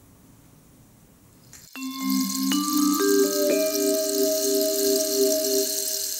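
Short musical sting of struck, bell-like mallet-percussion notes. After a second and a half of near silence, four or so notes enter about half a second apart, mostly stepping up in pitch, and ring on together as a chord over a high hiss.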